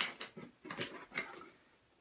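Cardboard pedal box being picked up and handled: a sharp click, then light scraping and rustling that fade out about a second and a half in.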